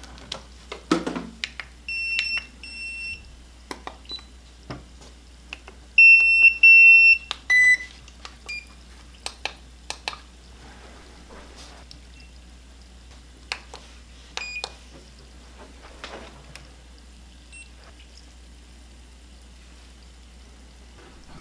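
Electronic beeps from several portable PEM hydrogen water bottles as they are switched on one after another: the power-on signal. There are two short beeps about two seconds in, a louder run of three about six seconds in, and single beeps at a few different pitches later. Button clicks and light handling knocks fall between them.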